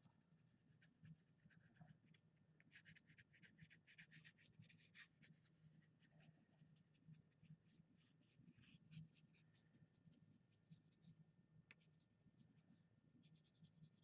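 Near silence with very faint scratching of a wax crayon on paper, in short runs of quick strokes a few seconds in and again in the second half.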